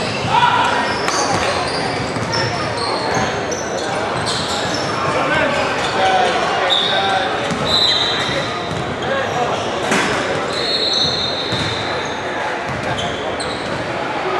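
Basketball game in a gym: a basketball bouncing on the hardwood court, indistinct voices of players and spectators, and several short high squeaks, all in an echoing hall.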